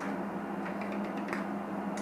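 Steady low hum with a few faint small clicks as bare wire leads are handled and joined by hand.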